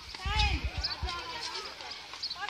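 A high-pitched voice calling out in the first half, over low thumps and a few sharp clicks.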